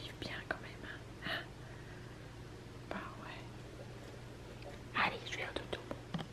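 A person whispering softly in a few short phrases, the loudest about five seconds in, over a low steady hum.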